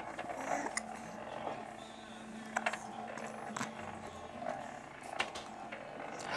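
A baby a couple of months old making soft coos and grunts, with scattered small clicks and a steady low hum underneath.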